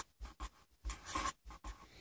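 Pen writing on notebook paper: several short, faint scratching strokes as small circled letters are drawn.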